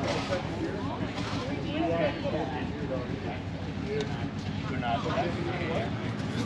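People talking close by, their conversation running on, over a steady low rumble.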